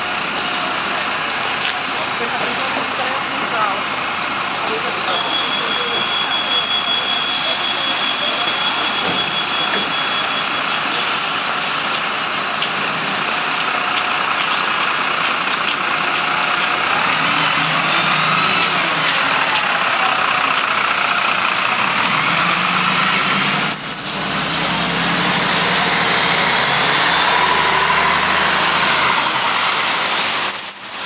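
Busy bus-stop street noise with a Karosa B 961 articulated city bus's diesel engine running close by, its low rumble growing stronger about halfway through, and a brief air hiss. A steady high-pitched two-note tone sounds for several seconds from about five seconds in, and people talk in the background.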